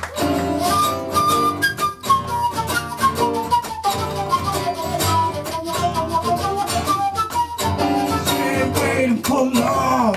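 Live acoustic band playing an instrumental break: a flute carries a wandering melodic solo line over strummed acoustic guitar and keyboard.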